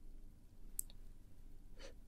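A pause in speech: faint room tone with a single short, high click just under a second in, and a faint intake of breath near the end.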